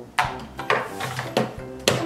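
Background music with four sharp knocks of plastic toy figures being set into and against a plastic toy car.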